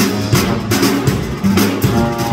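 Live jazz band playing: electric bass and drum kit in a steady groove, with regular drum and cymbal strokes over a running bass line.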